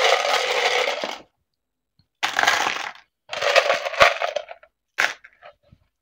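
Small plastic alphabet letters rattling in a clear plastic tub, shaken hard in three bursts. About five seconds in comes a single sharp clatter, followed by a few small clicks, as the letters are tipped out into a tray.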